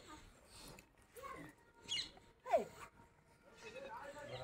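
Faint, scattered animal calls; the loudest is a short cry falling in pitch about two and a half seconds in.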